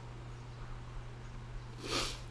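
Low steady electrical hum under faint room noise on a voice-call microphone. Near the end comes a short, sharp breath in, just before speech resumes.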